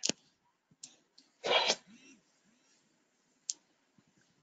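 A person sneezing once, a short sharp burst about a second and a half in, with a few faint clicks around it.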